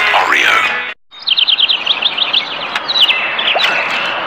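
A voice from the advert's soundtrack cuts off about a second in. After a brief gap, rapid high bird-like chirps repeat several times a second over a hissy background, growing sparser towards the end.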